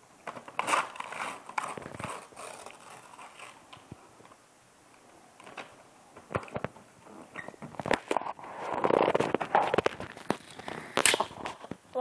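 Wrapping paper being torn and crinkled by hand as a gift is unwrapped, in irregular crackling bursts, busiest and loudest about eight to ten seconds in.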